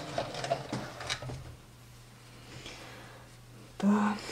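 A few clicks and fabric-handling noises as a freshly sewn knit doll-jacket piece is drawn out from under the presser foot of a stopped household sewing machine, then quiet room sound. A brief louder sound comes near the end.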